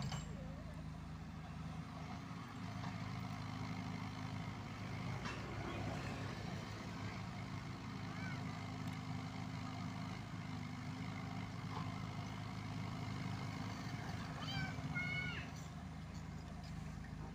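Komatsu PC78UU mini excavator's diesel engine running steadily as it digs and loads dirt into a dump truck, with a few short knocks of soil and bucket along the way.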